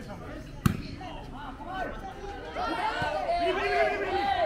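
A sharp slap of a hand striking a volleyball a little over half a second in. Then several players and spectators shout and call out over each other, getting louder in the second half.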